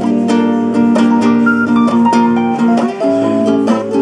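Acoustic guitar and electric keyboard playing an instrumental passage between sung lines, with plucked guitar notes over steady held keyboard notes and a short melody line.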